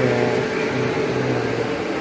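Indian Railways electric locomotive humming steadily at close range. A low hum runs with a higher whine above it, rising and dipping slightly.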